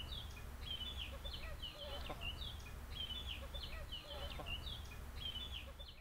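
Birds chirping in short, high, falling calls that repeat several times a second throughout, over a steady low rumble.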